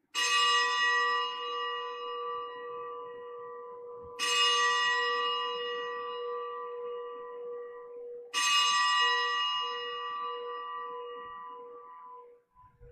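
A bell struck three times, about four seconds apart, each stroke ringing on and slowly fading before the next. It is the altar bell rung at the elevation of the consecrated host during Mass.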